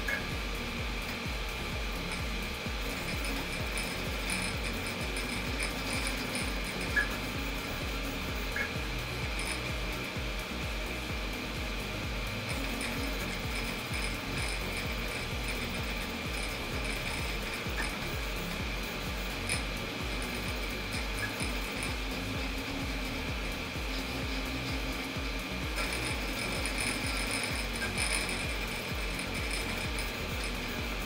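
3D printer running a print: steady cooling-fan noise with the stepper motors' buzzing shifting quickly as the print head moves.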